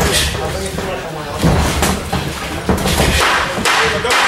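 Boxing gloves landing punches in a sparring exchange: several dull thuds spread over a few seconds.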